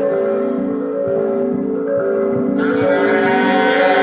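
Music: layered, steady held tones, with a brighter high layer coming in about two and a half seconds in.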